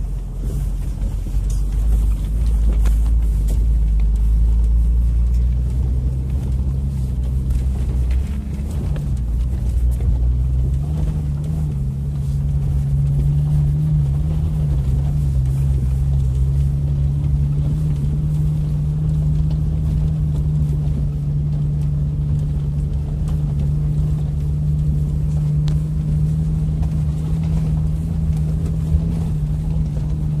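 Jeep engine running as it crawls over rough off-road ground, heard from inside the cabin. A low drone for the first ten seconds or so, then the engine note rises and holds steady at the higher pitch.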